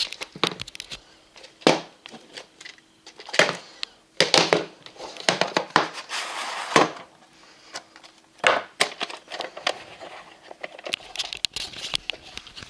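Handling noise from a handheld camera being moved about: irregular bursts of rustling and crinkling with sharp knocks, separated by short quiet gaps.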